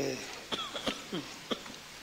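A man's voice trails off, then come brief, faint throat-clearing sounds and a couple of soft clicks in a pause in courtroom testimony.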